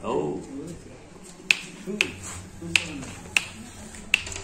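Four sharp snapping clicks, spaced about half a second to three quarters of a second apart, after a man's short exclamation at the start.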